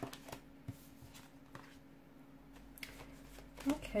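A deck of tarot cards shuffled by hand: scattered soft flicks and snaps of the cards, with speech starting near the end.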